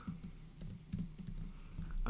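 Typing on a computer keyboard: a short run of separate keystrokes.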